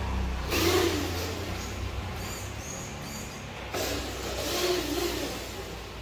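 Homemade remote-control model truck driving across a tiled floor, its motor and drivetrain running with a steady low hum and two louder surges as it accelerates.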